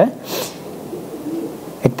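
A man's sharp, quick intake of breath in a pause between sentences, followed by a faint low murmur and a small mouth click just before his speech resumes.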